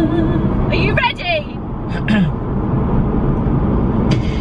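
Steady low road rumble inside a moving car's cabin. A held sung note ends just at the start, and two short vocal sounds come about one and two seconds in.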